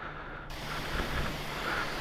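Jet-wash pressure lance spraying water onto a motorcycle, a steady hiss over a faint low hum; the hiss comes in about half a second in, after a short muffled moment.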